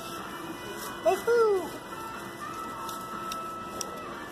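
A short vocal sound from a child, rising then falling in pitch, about a second in, over steady background music. A few faint ticks follow near the end.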